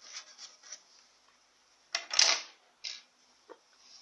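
Dusting the body of a Singer sewing machine with a small brush, heard as rubbing and scraping strokes: several quick light ones at first, a louder scrape about two seconds in, another shorter one just before three seconds, and a couple of light clicks.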